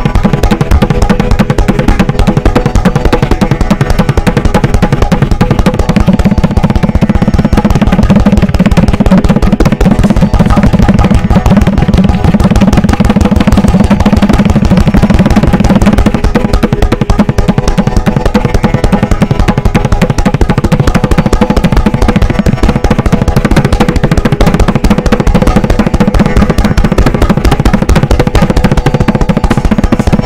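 Tabla played fast with both hands: a rapid, unbroken stream of strokes on the right-hand drum, ringing at its tuned pitch, over the deep bass of the left-hand drum.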